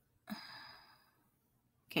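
A woman's breathy sigh, starting about a third of a second in and fading away over most of a second.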